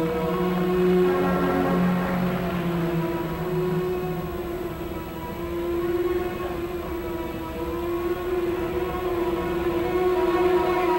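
Instrumental music for an ice dance free program, played in long held notes that change every second or two.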